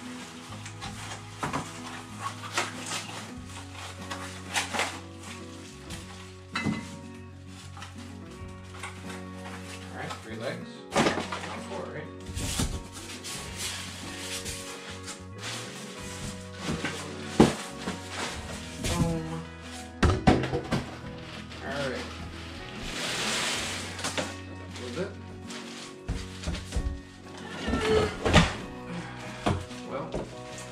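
Background music over the noises of unpacking a cardboard shipping box: styrofoam packing pieces being pulled out and set down, with scattered knocks and thunks and a longer scraping rustle about two-thirds of the way through.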